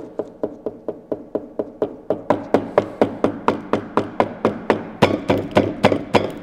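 Knuckles rapping on a wooden tabletop in a long, fast, even run of knocks, about four or five a second, growing louder after about two seconds.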